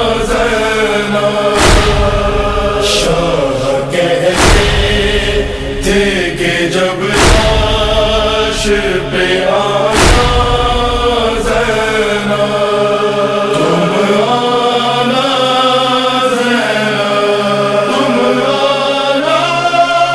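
Wordless male voices chanting a sustained, mournful noha melody, with a heavy deep beat about every three seconds. The beats stop about halfway through and the chanting carries on alone.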